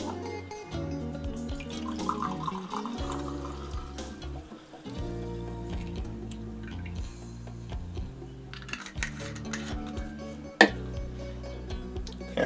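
Background music plays while wine is poured from a small bottle into a glass, the liquid splashing into the glass about two seconds in. A sharp knock comes near the end.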